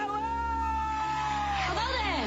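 A woman's voice holding one long high sung note that falls away near the end.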